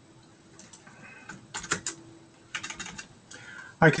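Computer keyboard keys clicking in three short bursts of typing about a second apart. A man's voice starts near the end.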